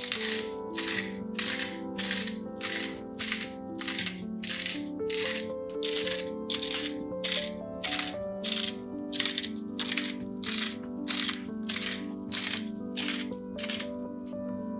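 Salt shaken from a shaker onto raw potato slices in quick, regular shakes, about two a second. Each shake is a short, bright rattling hiss, heard over soft background music.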